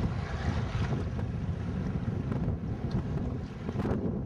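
Steady wind buffeting the microphone on a small rowing dory out on choppy water, with waves washing against the boat underneath.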